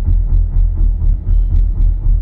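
Low, pulsing rumble inside a moving car's cabin, with faint regular ticks about four a second.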